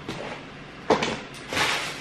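Grocery packaging being handled: a sharp knock about a second in as a plastic food tray is set down, then the crinkling rustle of a plastic bag being picked up near the end.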